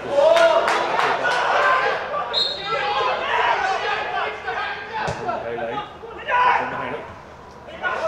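Football players' shouts and calls echoing around a near-empty ground, with a few thuds of the ball being kicked and a short high whistle blast about two seconds in.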